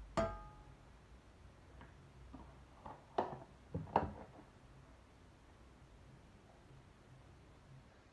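Kitchen cookware clanking: one sharp metal clank with a short ring just after the start, then a few lighter knocks about three to four seconds in.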